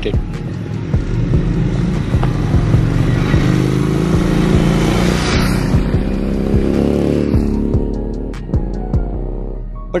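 Harley-Davidson Street 750's V-twin engine through an aftermarket exhaust, accelerating with the revs climbing, loudest as the bike passes a few seconds in, then fading away. Background music plays underneath.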